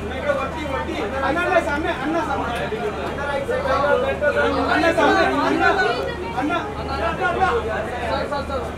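Several people talking over one another in indistinct chatter, with a steady low hum underneath.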